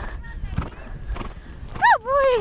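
A horse's hoofbeats thudding on grass, then near the end a loud, high horse whinny that rises and falls in pitch.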